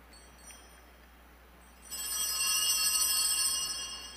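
A bright metallic ringing of several high steady tones, like a chime, starts suddenly about halfway in and carries on loudly to the end over faint room hiss.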